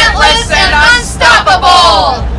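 A group of men, women and children shouting a slogan together in unison on a count of three, loud, in four drawn-out stretches.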